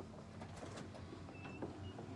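Footsteps and a few light knocks on a wooden boardwalk at a building door, with two brief faint high chirps a little past the middle.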